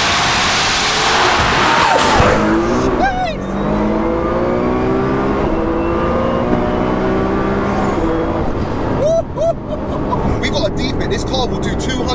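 Heavily modified 2008 Nissan GT-R R35's V6 under hard acceleration, its note climbing through the gears and dipping briefly at each upshift. For the first couple of seconds it is heard at the exhaust tip with wind and road noise, then from inside the cabin, where it is fairly muted by the double-silencer exhaust.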